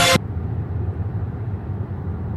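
Steady low road rumble heard inside the cabin of a car travelling at highway speed, left bare when background music cuts off abruptly a moment in.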